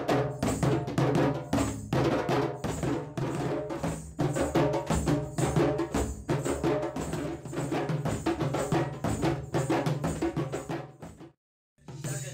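Several djembes played together by hand in a dense, fast rhythm of sharp strokes. The sound cuts out abruptly for a moment near the end.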